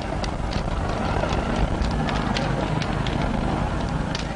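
A large building fire burning: a steady roar with frequent sharp crackles and snaps throughout.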